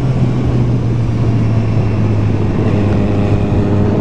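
Motorcycle engine running steadily at cruise, its note easing slowly lower across the few seconds, with a steady rush of noise beneath.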